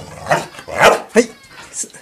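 Black-and-white border collie giving a few short, sharp barks at its owner, which the owner takes for the dog scolding her for ordering it about.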